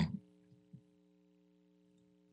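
Near silence with a faint steady electrical hum, after the tail of a spoken word at the very start.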